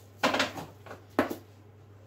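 Groceries being handled and set down on a table: two short handling noises, the first about a quarter second in and a second, sharper-starting one just past a second in.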